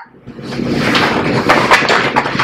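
Sheets of paper rustling and crackling as they are handled and lifted close to the microphone.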